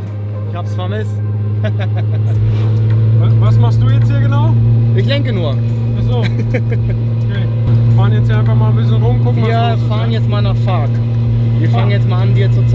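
Car engine running with a steady low drone, heard from inside the cabin while driving, growing a little louder over the first few seconds.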